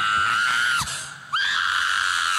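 A woman screaming into a microphone held at her mouth: two long, high-pitched screams held on one pitch, the first breaking off under a second in and the second starting about half a second later.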